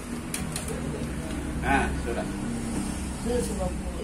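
Brief, quiet voices over a steady low rumble in the room.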